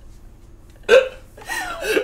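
A woman laughing: a sudden short burst of laughter about halfway through, then more laughing.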